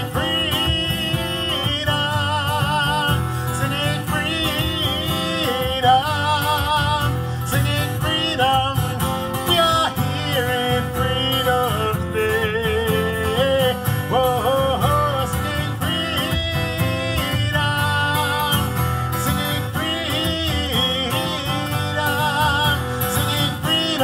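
A man singing in a wavering, held voice over an acoustic guitar, live folk music.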